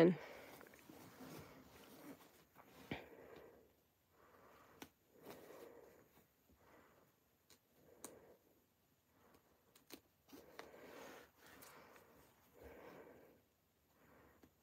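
Faint, soft rustling of a silk jacket lining being handled, coming and going every second or two, with a few small sharp clicks as a seam ripper snips stitches.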